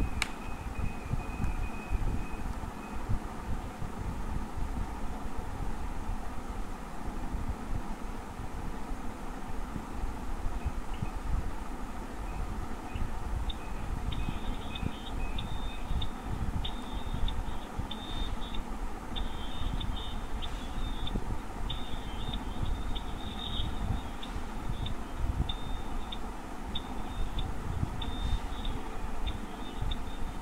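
Steady low rumbling background noise with a fluttering, wind-like buffeting, carried over a video call's audio. From about halfway through, a faint high tone keeps breaking in and out.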